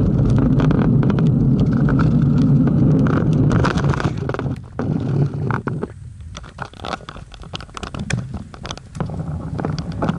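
Wind rushing over the microphone of a camera on a moving bicycle, loud and steady at first, then dropping off about halfway through as the bike slows, leaving scattered clicks and rattles.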